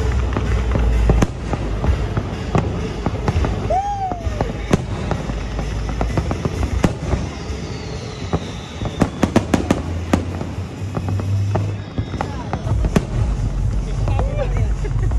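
Aerial fireworks going off: repeated booms and sharp bangs, with a quick run of crackling reports about nine to ten seconds in.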